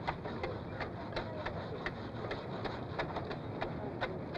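Ice-carving chisels chipping at blocks of ice: sharp, irregular ticks about three a second over the steady murmur of a street crowd.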